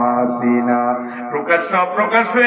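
A man's voice chanting in a melodic, sung delivery, holding one steady note for about a second before the pitch moves on.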